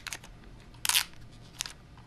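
Fingers and fingernail picking at a sticker on the edge of a plastic Blu-ray case: scattered small scratchy clicks, with one louder scrape about a second in.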